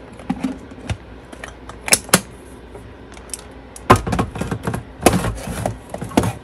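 Push-button pop-top plastic food storage container being handled: a run of sharp plastic clicks and knocks from its lid and body, busiest about two seconds in and again toward the end.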